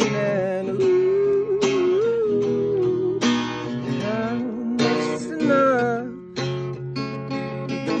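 Acoustic guitar strummed and picked, with a voice singing over it. The singing stops about six seconds in and the guitar carries on alone.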